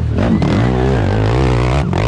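Racing ATV engine revving close by, its pitch rising and falling as the throttle is worked through a turn, with a brief drop in the revs near the end.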